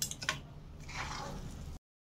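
A metal spoon clicks twice against a stainless steel pan, then there is a softer scraping as the thick bread-crumb mixture is scooped up. The sound cuts off abruptly near the end.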